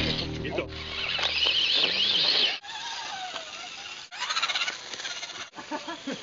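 Electric motor and gear whine of a radio-controlled scale crawler, rising and falling in pitch with the throttle, which cuts off abruptly about two and a half seconds in; more uneven motor whine follows.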